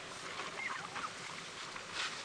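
A few short, high chirping calls, about half a second and one second in, over a steady outdoor hiss.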